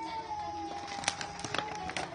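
A cat's long drawn-out meow: one held note that slowly falls in pitch and stops near the end. Light crackles of plastic packaging being handled run over its second half.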